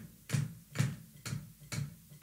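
Bass drum pedal played flat-foot: four kick-drum beater strokes, about two a second, on a foot technique that, as the drummer says, loses control.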